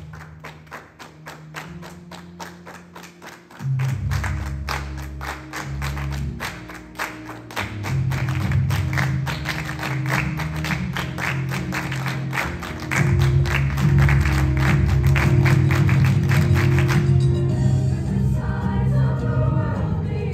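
School show choir singing over accompaniment with a quick, steady beat. Deep bass notes come in about four seconds in, the music gets louder at about thirteen seconds, and the beat drops out near the end.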